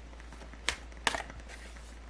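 Tarot card being drawn from the deck: a sharp click, then a brief papery snap and slide of card against card just after a second in.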